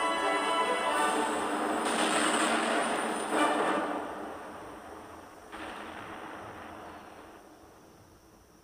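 Soundtrack music with rushing blast sound effects of an energy explosion laid over it: a loud rush about two seconds in, a sharper surge a second and a half later, and a softer one past five seconds. The whole mix fades away near the end.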